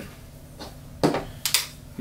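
Handling clicks from a gas airsoft pump shotgun as a BB shell is seated in it: three short clicks in about a second, the last two sharper.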